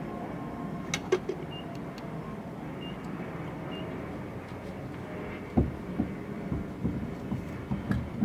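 Steady low hum of a petrol station heard from inside a parked car while it is being refuelled, with a couple of sharp clicks about a second in and three faint short high beeps. From about halfway comes a run of soft, irregular knocks.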